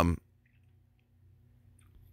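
A man's drawn-out "um" trailing off just after the start, then near silence with a few faint clicks.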